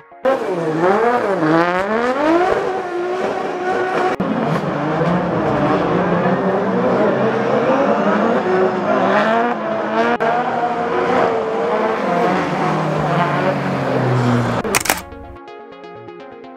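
Competition drift cars' engines revving hard, the pitch sweeping up and down over and over as the cars slide, then holding high and falling away near the end. A sharp burst comes just before the sound cuts off suddenly.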